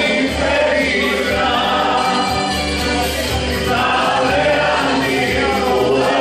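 A group of men singing a song together, voices held in long sung phrases.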